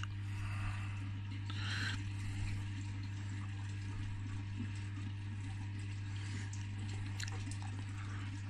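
Aquarium water trickling and flowing, over a steady low hum from the tank's pump. A brief brighter splash of water comes about two seconds in.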